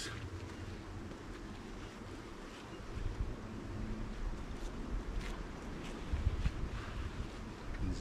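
Wind buffeting the microphone, a low rumble that swells for a moment near the end. Faint rustling of a canvas bee jacket as it is pulled on and its hood and veil are drawn over the head.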